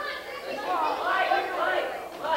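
A roomful of schoolchildren chattering at once, many voices overlapping and indistinct.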